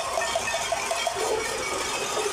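Cacerolazo: many pots and pans being struck from the balconies of an apartment block, a dense, continuous clanging of metal cookware as a protest.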